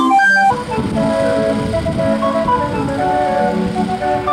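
A trailer-mounted band organ playing a tune on pipes and bells. About half a second in the sound cuts abruptly to music heard over the low rumble of a running vehicle.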